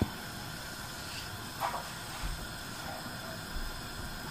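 Butter-and-sugar syrup with popcorn kernels hissing and bubbling softly in a glass-lidded frying pan on the stove, with a faint short crackle or two; no kernels have popped yet.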